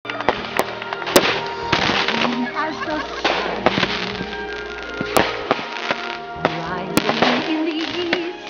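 Fireworks set off at ground level, popping and crackling in sharp, irregular bangs, with music and voices underneath.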